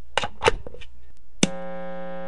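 A few short clicks and knocks, then about 1.4 seconds in a single guitar string plucked and left to ring on one steady note.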